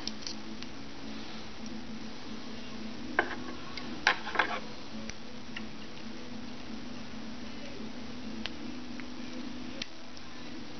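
A few short snips of small fly-tying scissors working at the hook: one about three seconds in and a quick cluster about a second later, over a steady low room hum.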